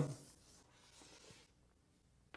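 Faint sound of handwriting, a few light strokes about a second in, as the next terms of the equation are written out.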